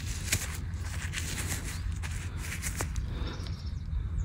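Faint rustling and a few small clicks as a gloved hand handles crumbly soil, over a steady low rumble.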